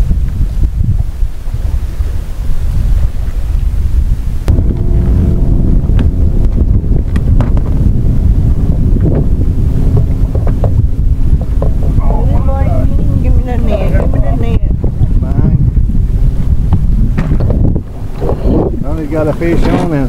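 Wind buffeting the microphone on an open boat, a dense steady low rumble. A steady hum joins about four seconds in, and indistinct voices come in during the second half.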